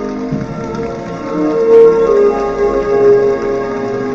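Background music of long held notes layered together, with no beat and no singing.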